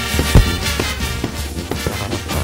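Mexican brass band (banda) music playing a chilena: brass over a steady drum beat, with one heavy low thump about half a second in.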